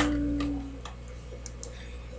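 A boy's long wailing cry, one held note sliding slightly down in pitch and fading out within the first second. After it there are only a few faint clicks.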